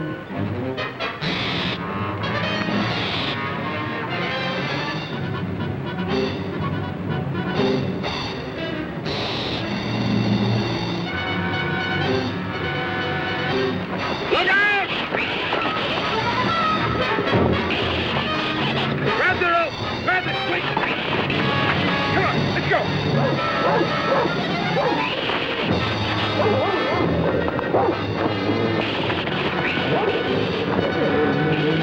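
Background film-score music playing throughout, with held chords.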